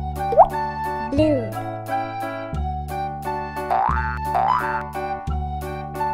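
Upbeat background music for a children's video, with a regular beat and keyboard-like notes. Sound effects with quickly sliding pitch are laid over it: a fast rising glide under a second in, a wobbling swoop just after a second, and two rising glides around four seconds in.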